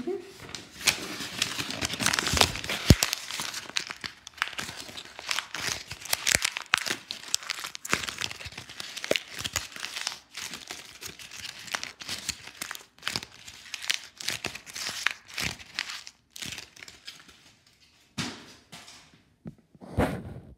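A sheet of printer paper being crumpled and crushed in the hand close to the microphone: a dense run of crackles that thins out about 16 seconds in, with a few last crinkles near the end.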